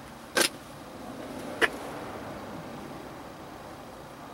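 Two sharp knocks about a second apart at the parked car, the first slightly longer than the second.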